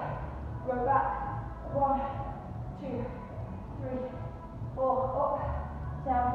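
A voice in short phrases about once a second over a steady low pulsing beat.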